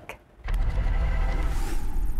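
News segment intro sting with music: a deep low rumble starts suddenly about half a second in, and a rising whoosh swells over it near the end.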